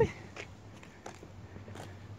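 A few faint footsteps on a paved path over a low, steady background hum.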